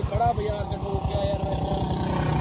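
Royal Enfield motorcycle's single-cylinder engine idling with a steady, even low thump, while a voice speaks faintly in the first half-second.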